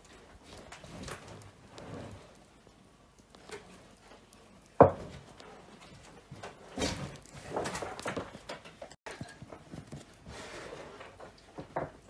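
Scattered rustling and soft knocks, with one sharp knock about five seconds in.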